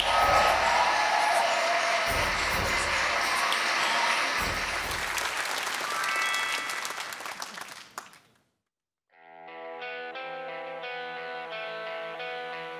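Studio audience applauding, fading out about eight seconds in. After a moment of silence a soft instrumental song intro begins, with evenly repeated notes.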